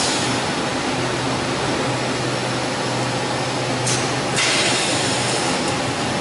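Bottled-water production line machinery running: a steady mechanical drone with a low hum, and a hiss that comes in about four seconds in.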